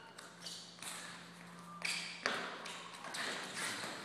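Two wrestlers scuffling on a mat during a live drill: irregular shuffles, scuffs and thuds that grow louder toward the end.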